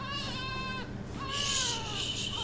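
Baby crying in two drawn-out, high-pitched wails, the second starting a little after a second in.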